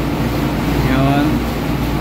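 Steady low machinery hum, with a person's voice briefly speaking about halfway through.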